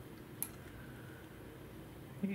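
A quiet room with a single light click about half a second in, as a forged carbon fibre swingarm is set down on a small digital scale.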